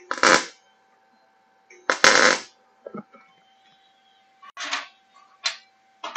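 MIG welding arc struck in a few short bursts, each under a second, with a faint steady hum between them.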